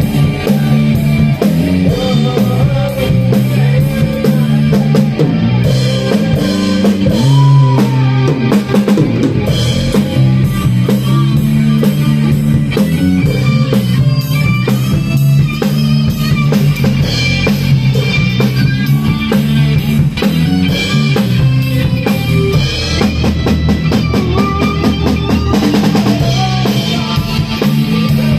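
A live rock band playing loud in a small room: a drum kit driving a steady beat under electric guitar and keyboard.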